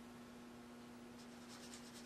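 Near silence: room tone with a steady low hum. Faint scratching in the second half from a liner brush working raw umber and water on the palette.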